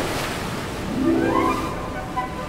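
Ocean waves surging and breaking, a steady rush of water, with a single rising tone swelling up over it about a second in.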